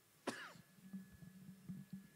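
A man's short, quiet cough or throat-clearing about a quarter second in, followed by faint room hum.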